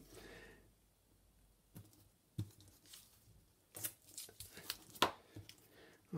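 Faint handling of double-sided tape and card: a few scattered small rustles and taps as tape is pressed and folded over at the edges of a card topper.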